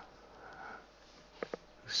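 A reader's soft breath in through the nose in a pause between sentences, then two faint mouth clicks just before he speaks again.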